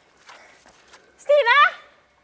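A girl's voice: a faint breathy sound, then a little past halfway a short, high, wavering cry without words.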